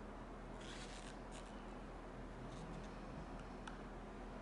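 Quiet handling sounds of gloved hands and cups while thick white acrylic paint is tipped into small paper cups. There are a few faint soft rustles in the first second and a half, then a few light ticks, over a steady low room hum.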